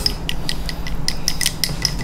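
Wooden chopsticks beating a raw egg in a small ceramic bowl: a quick, irregular run of light clicks as the tips strike the bowl, several a second.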